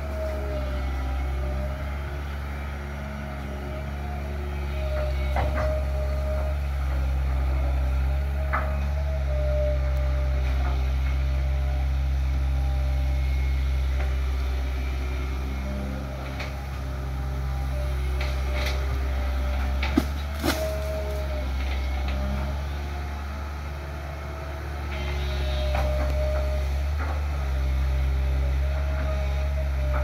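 Long-reach Kobelco SK07 excavator's diesel engine running with a steady low drone that swells and eases as the hydraulics take load while the boom works. A few sharp knocks sound over it, the loudest two close together about twenty seconds in.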